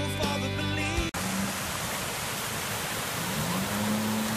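A song with singing stops abruptly about a second in. It gives way to a steady rushing hiss of water from pool fountains splashing into the pool.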